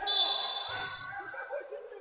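Referee's whistle: one steady shrill blast of about a second, calling a foul, with players' voices underneath.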